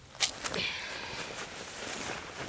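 A sharp tap about a quarter second in, then steady rustling of dry leaves and camouflage clothing as someone moves on the forest floor.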